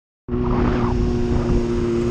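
Honda Hornet motorcycle's inline-four engine running at a steady cruising speed, a constant drone over low wind rumble on the microphone, cutting in abruptly about a quarter second in.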